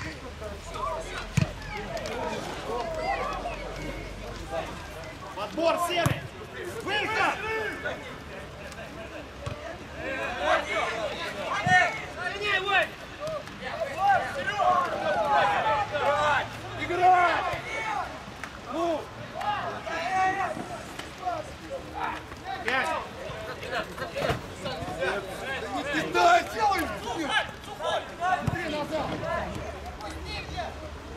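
Football players and sideline spectators shouting and calling out indistinctly during open play. Now and then a sharp thud of the ball being kicked cuts through.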